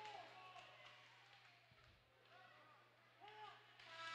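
Near silence in an ice arena: a steady low hum with faint distant voices near the start and again about three seconds in, and a few faint knocks.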